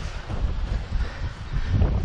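Wind buffeting the camera's microphone, an uneven low rumble.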